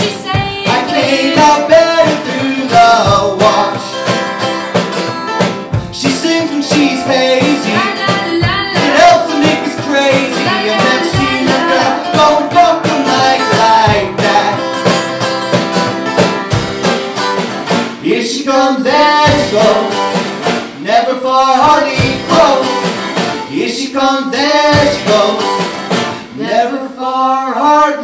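A folk song played live on strummed acoustic-electric guitar, with singing and a steady beat struck on a homemade kit of upturned paint buckets.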